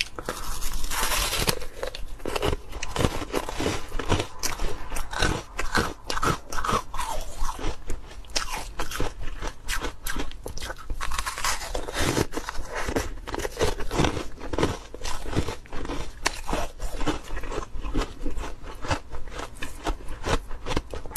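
Close-miked biting and chewing of moulded frozen ice: rapid, dense crunches one after another as the ice breaks between the teeth.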